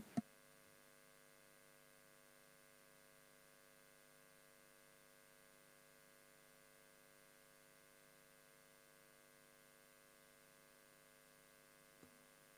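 Near silence with a faint steady electrical hum, after one short click at the very start.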